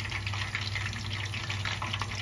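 Hot peanut oil bubbling in a steel pot where pork belly is being deep-fried: a steady sizzle full of fine crackles, over a low steady hum.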